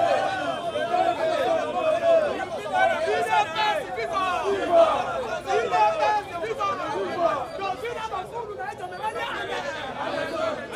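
Men talking loudly over one another in an animated street exchange.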